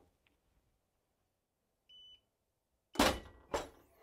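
Clamshell heat press: its timer gives one short high beep about halfway through, marking the end of the dwell time, and about a second later the press is opened with two loud clacks of the upper platen and handle.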